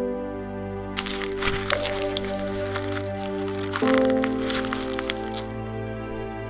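A sheet of paper crumpled in both hands: a crackling run of sharp crinkles that starts about a second in and stops about half a second before the end, over background music.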